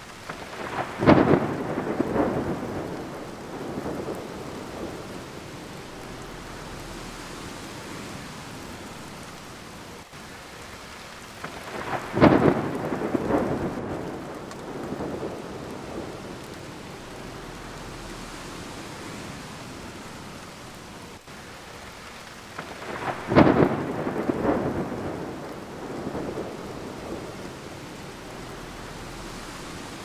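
Steady rain with three claps of thunder about eleven seconds apart, each a sudden crack that rumbles away over a few seconds.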